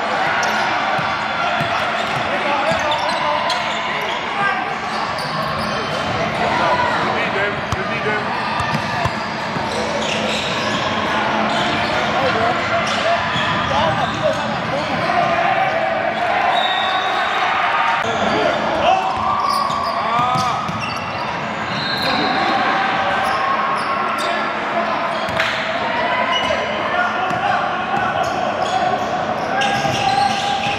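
Live sound of a basketball game in a large gym: a basketball bouncing on the hardwood court, short squeaks, and a steady hubbub of players' and spectators' voices, all echoing in the hall.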